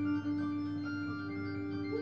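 Live improvised music from a trio of electric harp, voice and double bass: a held drone, one strong steady mid-pitched tone over a steady low tone, with thinner higher tones entering and fading.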